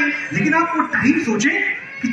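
A man's voice speaking in Hindi over a microphone, drawn out with sliding pitch.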